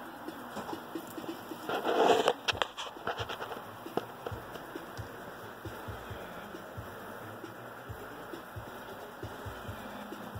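Handling noise as statue parts are worked by hand: a loud rustling clatter about two seconds in, then a quick run of small clicks and knocks, then only faint occasional ticks.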